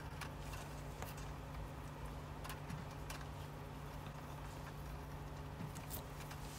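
Faint, scattered clicks and light taps over a steady low hum, from hands working Romex cable and a fish tape.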